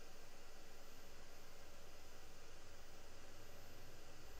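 Faint, steady hiss with a low hum underneath: background noise of a headset microphone during a pause in speech.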